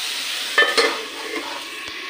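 Potato matchsticks sizzling as they fry in oil in a metal kadai, with a few sharp metallic clinks against the pan a little over half a second in.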